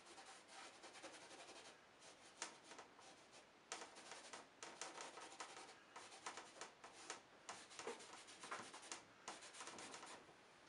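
Faint, irregular rubbing strokes of a paper towel wiped against a painting canvas, lifting off thin oil paint where the underpainting has gone too dark.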